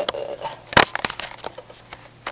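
Rustling and crackling of a stretchy knit dress being tugged at close to the microphone, with scattered clicks and one sharp, loud click a little under a second in.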